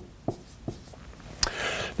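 Dry-erase marker writing on a whiteboard: a few light taps and short strokes of the felt tip against the board.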